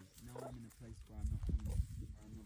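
Meerkats making short, low grunting calls, with a person laughing near the end.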